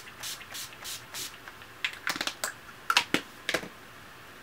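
Pump-action setting spray misted onto the face, about five quick hissing sprays in the first second. A few sharp clicks or taps follow about two to three and a half seconds in.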